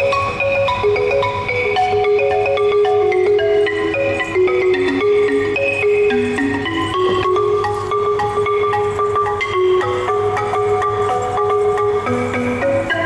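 Balafon, a West African wooden xylophone with gourd resonators, struck with mallets in a quick, repeating melody, with a hand drum playing along underneath.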